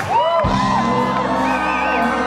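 A live rock band plays loudly on stage, with a low held note under the high, gliding whoops and shouts of the audience.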